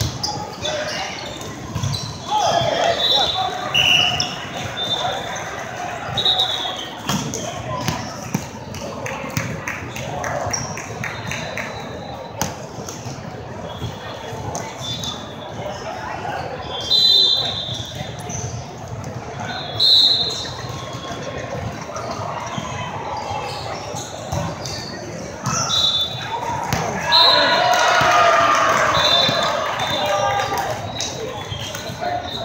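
Indoor volleyball rally in a large hall: the ball being struck, sneakers squeaking on the sport-court floor, and players calling out over a steady hum of voices from the surrounding courts. The voices get louder and busier near the end as the team comes together after the point.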